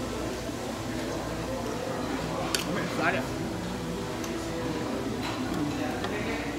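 Indistinct talking voices in a busy dining room, with a sharp click about two and a half seconds in.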